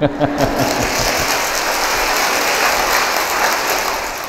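Audience applauding: many hands clapping in a dense, steady patter that fades away near the end.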